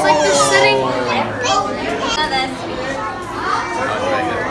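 Children's voices, high-pitched and excited, talking and calling out over the chatter of other visitors. The words are not clear.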